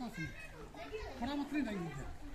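Voices of people talking off-microphone, quieter than the nearby talk, in short phrases with rising and falling pitch.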